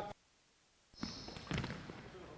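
A second of near silence, then basketball players' sneakers squeaking briefly on a hardwood gym floor as they box out for a rebound, and a single thud about halfway through from the shot basketball.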